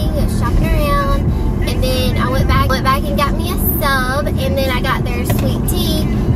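Steady low road and engine drone inside a moving car's cabin, with a young child's high-pitched voice going on over it throughout.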